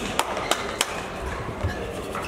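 Sharp taps of badminton rackets striking shuttlecocks in a large sports hall, three quick hits in the first second and a fainter one later, over a murmur of distant voices.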